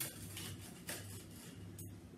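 Knife cutting through toasted sourdough on a wooden board: a few short, scratchy crunches over a low steady hum.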